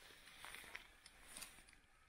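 Near silence with a few faint clicks.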